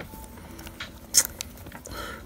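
Plastic action figure (Star Wars Black Series Incinerator Stormtrooper) being handled: a few light plastic clicks and ticks from its joints and parts, with one sharper click just past a second in.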